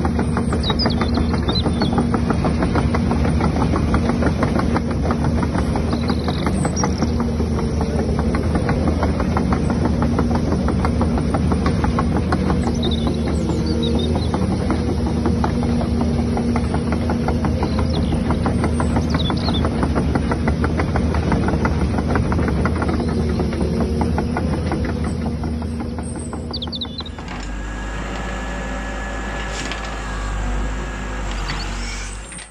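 Motors and gears of radio-controlled model excavators running steadily with a fast, buzzing mechanical rattle, with faint bird chirps on top. Near the end the machine sound drops away and music with guitar comes in.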